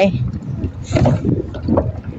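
Wind on the microphone as an uneven low rumble, mixed with water moving around a floating plastic pontoon dock, with faint voices.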